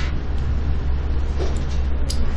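Steady low hum with a faint even hiss: background noise of the room and microphone, with no speech.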